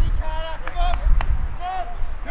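Men's voices calling and shouting out on the football field, over a low rumble, with a couple of short sharp knocks about a second in.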